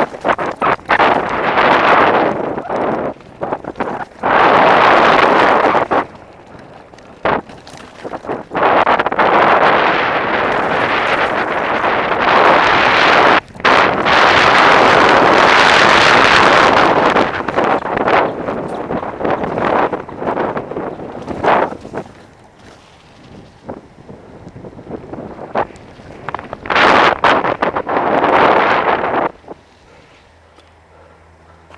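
Strong storm wind buffeting a helmet-mounted camera's microphone on a downhill mountain-bike ride. It comes in loud gusts that cut out and return every second or two, eases about two-thirds of the way through, then gives one last loud burst near the end.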